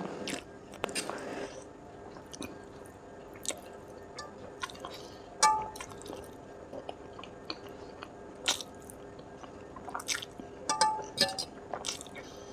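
Close-miked eating of saucy instant noodles: wet chewing and lip smacks with sharp mouth clicks scattered throughout, a short slurp of noodles about a second in, and a quick run of clicks near the end.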